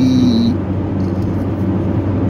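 Steady low rumble and hum of a car's engine and tyres, heard from inside the cabin while driving.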